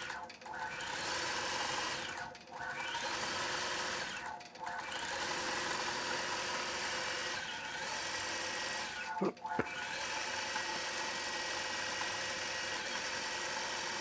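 Gammill Statler Stitcher computer-guided longarm quilting machine stitching steadily through a quilt, with a few brief stops along the way.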